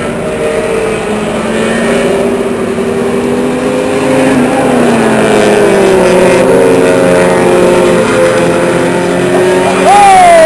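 Several race car engines running at speed around a short oval track, several engine notes heard at once and drifting in pitch as the cars go by, getting louder over the first few seconds.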